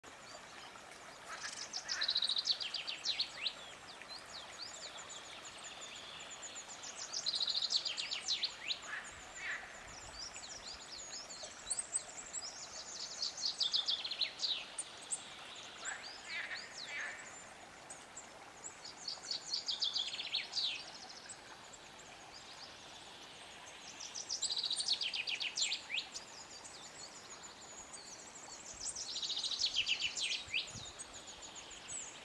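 A songbird singing, repeating a short phrase about every five seconds, each a quick run of notes falling in pitch, with a few shorter chirps in between. Faint steady background noise underneath.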